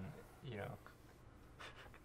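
A man's voice trailing off softly in a brief "you know", then quiet room tone.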